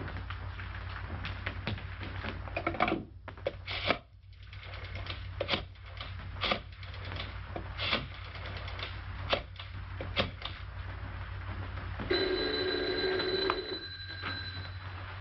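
Old desk telephone handled with scattered clicks and knocks over the soundtrack's steady hum and hiss. Near the end, a telephone bell rings for about a second and a half.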